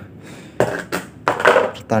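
Mostly a man's voice talking. The first half second is quieter room tone.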